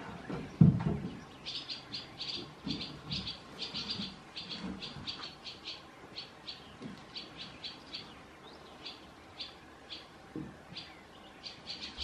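Barn swallow calling: a run of short, sharp high notes, several a second, starting about a second and a half in and growing sparser toward the end. A loud low thump comes about half a second in.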